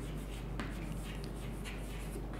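Chalk scratching and tapping faintly on a chalkboard as a word is written by hand, over a steady low hum.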